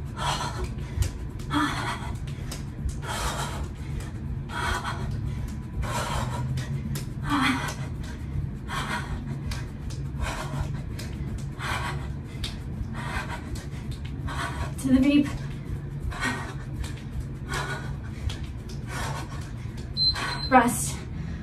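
A woman panting hard and rhythmically, one sharp breath a little under every second, out of breath from running in place at high intensity. A few short voiced grunts come through now and then.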